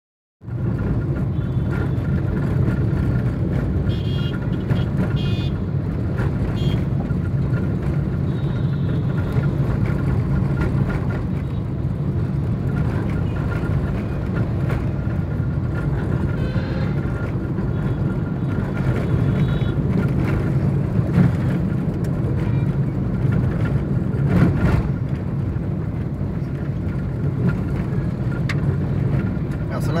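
Steady engine and road noise of a vehicle driving along a busy road, with other traffic passing.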